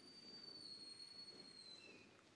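Near silence: faint room tone with a thin, high, steady tone that dips slightly in pitch near the end.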